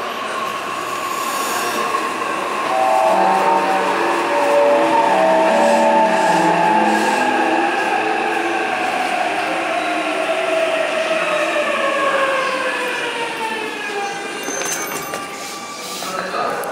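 Jōban Line E531 series electric train pulling into the platform and braking to a stop: its motor whine falls steadily in pitch as it slows, with a short run of stepped tones a few seconds in, and dies away shortly before a few clicks near the end.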